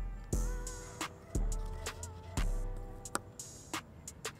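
Background hip-hop instrumental: heavy bass hits about once a second under crisp hi-hat ticks and a soft held melody.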